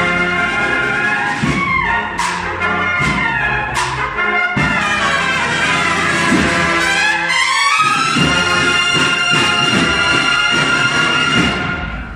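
Spanish cofradía bugle-and-drum band, with valved cornetas and drums, playing the closing phrase of a processional march. After a few drum strokes the band climbs into a long held final chord, which stops just before the end.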